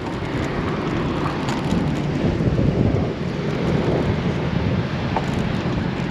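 Steady wind noise on the microphone of a camera riding on a moving bicycle, mixed with traffic on a main road.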